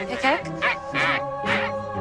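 Martian characters' clipped, duck-like "ack-ack" chatter, a quick run of short calls, over background music with steady held notes.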